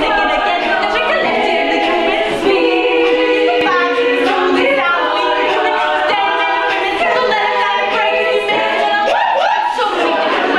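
Women's a cappella group singing in several parts at once, voices alone with no instruments, with a rising vocal slide near the end.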